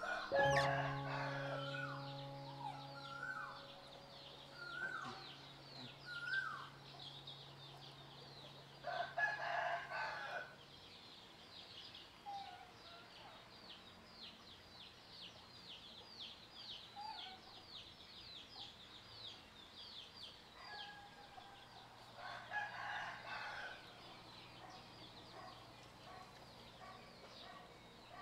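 Rooster crowing twice in the background, about nine seconds in and again near the end, over rapid, continuous high-pitched chirping.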